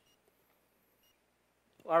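Near silence of room tone, then a man's voice begins speaking near the end.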